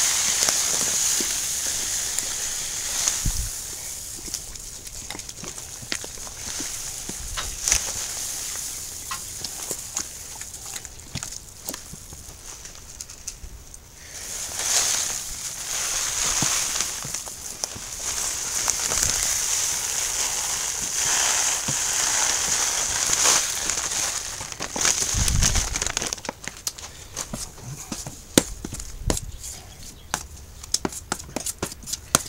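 Crushed malted grain pouring from a bag into hot water in a plastic cooler mash tun while a spoon stirs it in: the doughing-in of an all-grain mash. A steady, grainy hiss thins out partway through and comes back strong in the second half, over many small clicks and knocks from the stirring.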